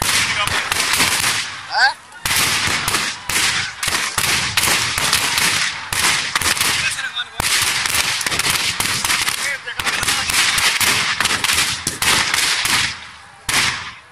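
Firecrackers packed in a burning Ravana effigy going off in a dense, rapid string of crackling bangs, with short lulls about two seconds in and near the end. A rising whistle sounds at about two seconds.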